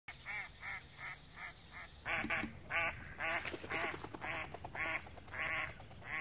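Ducks quacking: a run of short quacks, quieter and evenly spaced at first, then louder and longer from about two seconds in.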